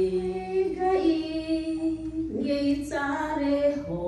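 A woman singing a gospel song solo into a handheld microphone. She holds one long note for about two seconds, drops lower, then rises again near the end.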